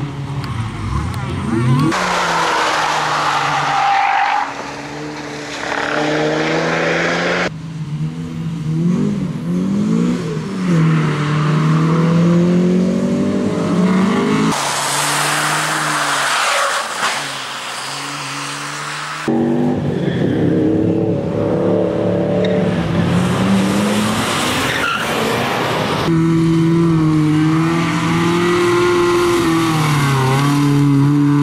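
Rally cars driven hard one after another, each engine revving up and dropping back through gear changes, with tyres squealing in the corners. The sound changes abruptly to a different car every few seconds.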